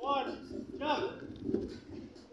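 Two short vocal calls from people's voices, with a soft thump about a second and a half in.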